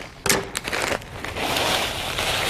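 A bag of dry boxed stuffing mix crinkling as it is opened and tipped, then the dry crumbs pouring out into a skillet of liquid in a steady rush for the last part.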